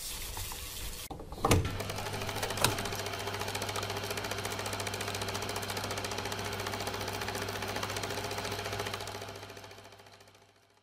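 Vintage film projector running: a rapid, steady mechanical clatter over a low hum. It starts after a couple of sharp knocks in the first seconds and fades out near the end.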